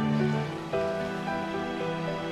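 Soft instrumental background music with sustained notes. Under it is a faint patter, likely the curry simmering as the glass lid comes off the pot.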